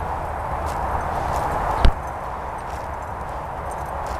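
Hoofbeats of a ridden horse coming across grass toward the microphone, over a steady background hiss, with one sharp thump just under two seconds in.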